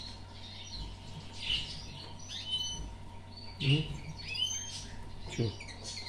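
Small songbirds chirping: short, thin, high chirps and quick upward glides, a few every second, over a faint steady hum.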